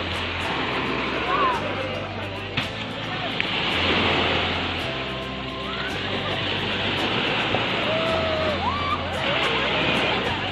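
Background music with a steady bass line over the wash of small waves breaking on a sandy shore, with a few short voices calling out.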